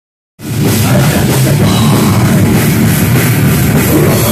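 Live heavy metal band playing loud, with distorted electric guitar and a drum kit, heard from close to the stage. The music cuts in abruptly about half a second in.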